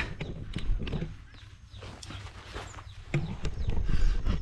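Handling noise from a hand-held camera: irregular light clicks and knocks with rustling over a low rumble, louder again near the end.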